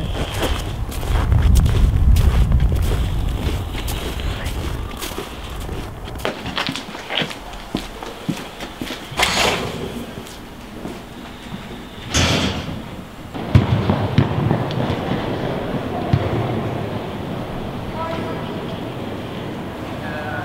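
Footsteps on a snowy, slushy pavement with a low rumble in the first few seconds, then a glass entrance door being pulled open about halfway through, followed by the echoing background noise of a large indoor sports hall with voices.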